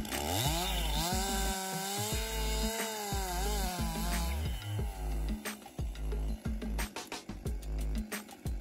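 Stihl MS 261 two-stroke chainsaw revving up about half a second in and running at full throttle as it cuts through a large felled log, the pitch dropping away about four seconds in. Background music with a beat runs underneath.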